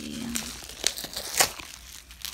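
Plastic bubble wrap crinkling as it is handled, with a few sharp crackles, the loudest about a second and a half in.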